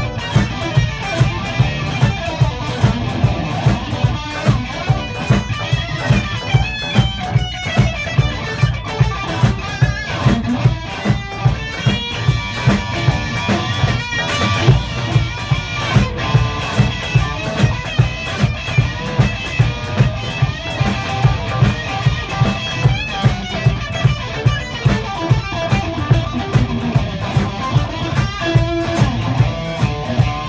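Electric guitars playing an instrumental number in a live band rehearsal, with a steady beat of about two pulses a second.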